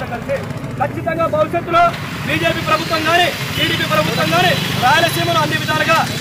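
A man speaking loudly and forcefully in Telugu, over a steady low background rumble.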